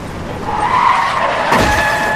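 Car tyres squealing in a skid: a sustained high screech that starts about half a second in, with a sudden loud hit about a second and a half in.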